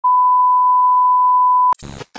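Steady, loud test-pattern beep tone of a TV colour-bar screen. It cuts off abruptly near the end and is followed by a short burst of glitchy static.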